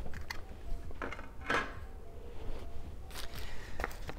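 Light handling noises: a few small clicks and knocks of a plastic drone shell and cardboard packaging being handled on a table, with a brief rustle or scrape about a second and a half in.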